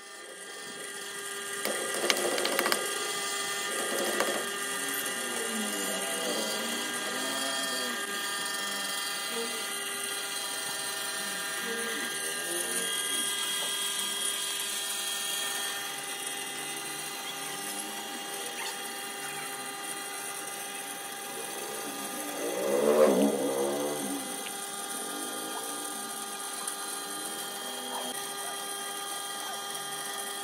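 Electric potter's wheel running with a steady motor whine of several fixed tones, under wet hands rubbing and pressing the spinning clay. The rubbing swells louder for a moment about two-thirds of the way through.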